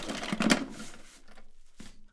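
Hands rummaging through the contents of an open drawer: rustling and clattering, loudest in the first second and then tapering off.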